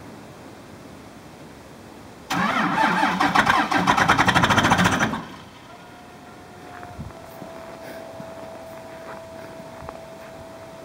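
Starter cranking a cold Cummins 24-valve inline-six diesel in a Dodge Ram 2500 for about three seconds, in quick even pulses. The engine does not catch: this is one of several tries at starting it in −20 °C cold.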